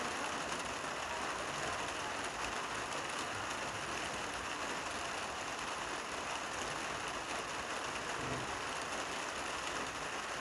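Steady rain falling, an even hiss that holds the same level throughout.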